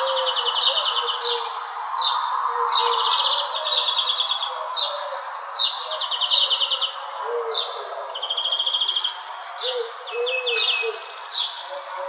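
Songbirds singing in a park: short, rapid trilled phrases follow one another throughout, over a steady background hiss. Low, rounded calls join in during the second half.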